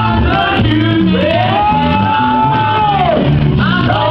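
Live gospel worship music: a singer rises into one long, held high note from about a second in until near the end, then slides down, over the band.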